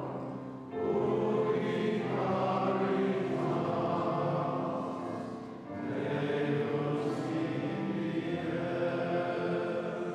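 A choir singing a hymn in two long phrases, each following a short break, one about half a second in and another around five and a half seconds in.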